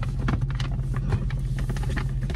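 Steady low hum of a car's engine idling, heard inside the cabin, with the rustling of a large paper gift bag being handled and passed across the front seats.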